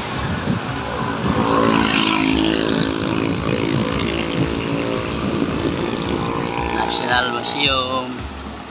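Engine of a moving road vehicle running at a steady speed, a steady hum over low road and wind rumble.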